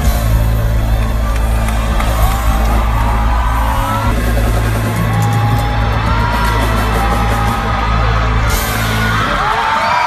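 Live pop concert music picked up by a phone's microphone, loud with an overloaded, booming bass, a singer's voice gliding over it and the crowd yelling along.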